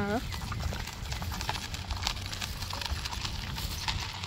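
A two-wheeled hand truck loaded with a heavy sack rolling over a dirt road: its wheels crunch and rattle over grit as a run of small irregular clicks, with footsteps in sandals alongside, over a low steady rumble.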